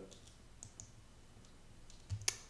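Near silence: room tone with a few faint, scattered clicks from a computer being worked.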